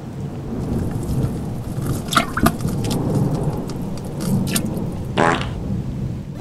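Rain-and-thunderstorm recording played by a sound machine: steady rain hiss over a low thunder rumble. It is broken by a few sharp cracks about two seconds in and a louder one about five seconds in.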